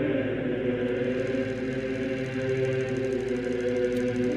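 Intro music of sustained chanted voices, like a choir holding one steady chord.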